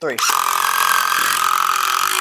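Two DeWalt cordless impact drivers, the 12 V DCF801 and the 20 V DCF787, hammering long screws into a wooden beam at the same time: a steady, loud mechanical rattle that starts together on the count.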